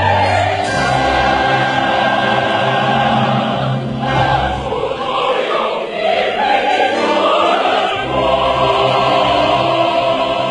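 A soprano singing a Chinese art song in full operatic voice, with choir and orchestral accompaniment, in long held, gliding sung notes.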